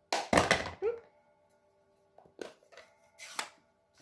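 Clacks and knocks of a plastic-cased Stampin' Up ink pad being picked up, opened and set down on the table: a burst of knocks in the first second, then two lighter knocks later.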